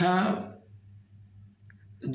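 A man's voice finishing a spoken word in Hindi, then a pause of about a second and a half. Under it runs a steady high-pitched tone with a faint low hum.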